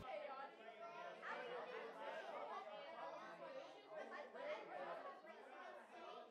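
Faint, indistinct background chatter of voices, with no words clear enough to make out.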